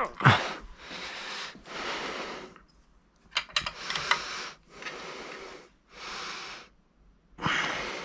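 A man breathing in and out close to the microphone, about seven breaths, with the effort of the final tightening of a hub-motor axle nut with a spanner. A few light metallic clicks come from the spanner about three and a half to four seconds in.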